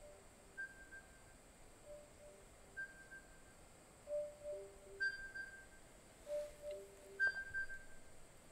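Meditation timer alarm sounding: a short repeating tune of clear electronic notes that grows louder, then stops near the end, marking the end of the sitting period.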